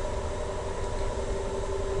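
A steady background machine hum with a few steady tones running through it, level and unchanging throughout.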